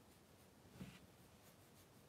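Faint strokes of a Pentel pocket brush pen on paper, with a slightly louder soft stroke or hand rub about a second in.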